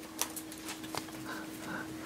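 Quiet handling of a small stack of Magic: The Gathering cards: a few faint clicks and rubs over a low steady hum.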